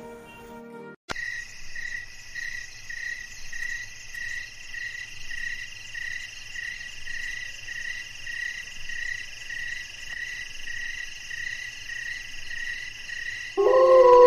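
A night-time chorus of chirping insects, a steady high chirr pulsing about twice a second, starting abruptly about a second in. Near the end a loud, wavering musical tone comes in over it.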